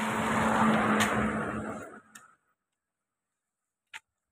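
A road vehicle passing close by: its engine and road noise swell to a peak about a second in, then fade and cut off abruptly about two seconds in.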